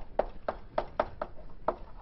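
Chalk tapping and scraping on a blackboard as a word is written out: a quick, uneven run of about eight short taps.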